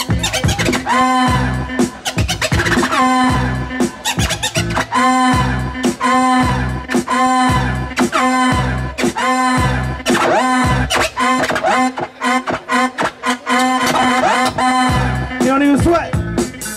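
Turntable scratching: a DJ's hand working a record back and forth on a turntable over a hip hop beat, giving quick scratches that slide up and down in pitch, repeated in time with the beat.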